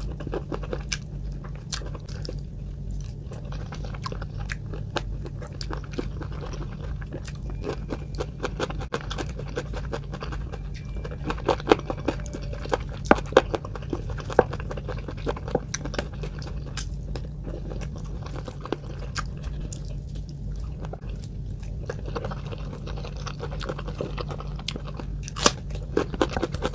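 Close-miked chewing and crunching of chicken feet curry with rice eaten by hand, with wet squishing as fingers mix the rice and curry. The sharpest crunches bunch up in the middle and again near the end, over a steady low hum.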